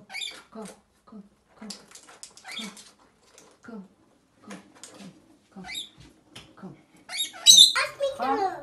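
Rainbow lorikeets chattering in short calls, about two a second, with a louder burst of high-pitched calls near the end.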